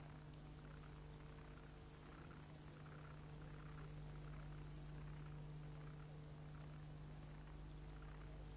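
Near silence: a steady low hum with faint hiss from the recording chain, with no other sound.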